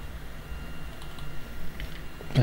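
A few keystrokes on a computer keyboard while code is typed, a handful of light clicks about a second in and near the end, over a low steady hum.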